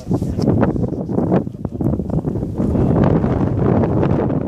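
Wind buffeting a phone's microphone: a loud, continuous, rough rumble with irregular gusty bursts.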